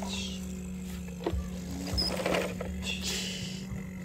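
Loose sand and soil scraping and rustling as toy dump trucks and a toy excavator are pushed and scooped through it, with a few light knocks of plastic. There are two short scratchy spells, one at the start and one about three seconds in, over a steady low hum.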